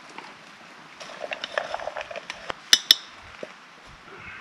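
Chopped carrot pieces tipped from a bowl into a small camping pot, clattering in as a run of light clicks, then two sharp clinks close together a bit under three seconds in.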